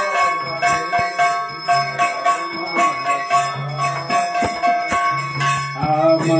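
Temple bells ringing continuously, with rapid metallic strikes and a low tone that sounds in short stretches, as part of a Hindu arati worship ceremony.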